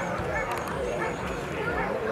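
Indistinct chatter of several people's voices, with a dog barking among them.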